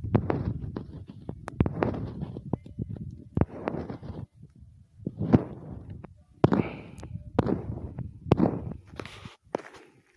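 Footsteps on a dry dirt road: uneven steps a little under one a second, with sharp clicks in between.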